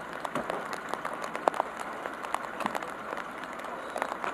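Outdoor work noise: irregular light taps and rustling of a plastic tarp being handled over a wooden crate, over a steady background hiss.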